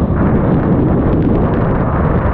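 Loud, steady wind buffeting on the microphone of a motorcycle riding at highway speed in strong storm winds, with the bike's engine and wet-road tyre noise beneath it. The bike is a Honda Shadow 750 Aero cruiser.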